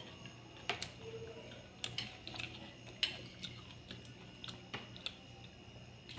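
Sparse, light clicks and taps of a spoon against small ceramic bowls and plates, every second or so, over a quiet room.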